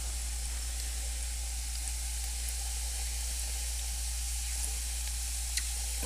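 Liquefied air-duster propellant boiling off in a glass of water as it freezes into ice, giving a steady hiss.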